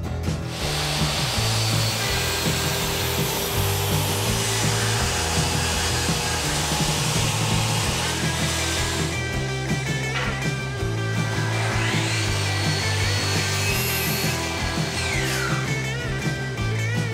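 A jobsite table saw running and ripping a long wooden board, with rock background music throughout.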